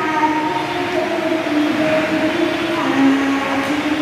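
A young girl singing into a microphone, her voice amplified through a small portable speaker, moving through long held notes.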